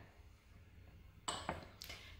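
A small spoon tapping twice against a ceramic bowl, about a quarter second apart, after a stretch of quiet room tone.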